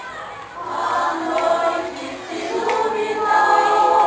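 Catholic parish choir of women and men singing together in sustained sung lines. It starts softly and swells to full voice about half a second in.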